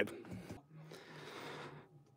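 A person breathing out audibly for about a second, a soft breathy rush.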